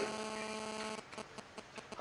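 Steady electrical mains hum, a buzzing tone with many even overtones, that drops to a fainter hum about a second in, with a few small ticks.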